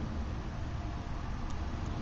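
Steady hiss with a low rumble: a wood-gas can stove burning wood pellets in light rain, with a faint click about one and a half seconds in.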